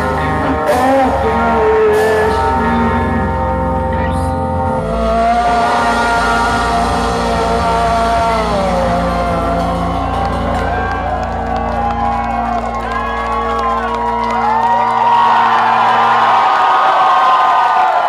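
A live heavy metal band holding and ringing out the final chords of a song, with electric guitars, bass and cymbals. The low end drops out about fifteen seconds in, and the crowd cheers over the last notes.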